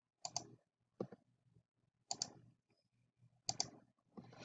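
Computer mouse button clicks: three sharp double clicks spaced about a second and a half apart, with a duller single knock between the first two.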